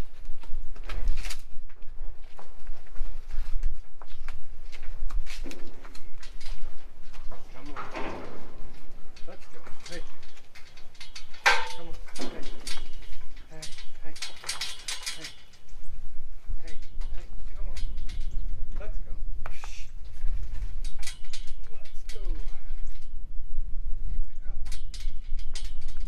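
Cattle loading into a steel stock trailer: hooves knocking and clattering on the trailer floor and the metal gates and panels rattling, in an irregular run of knocks.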